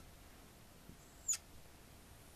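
Marker drawing on a whiteboard: one short, high squeak about a second and a half in, with a faint tap as the pen meets the board at the start.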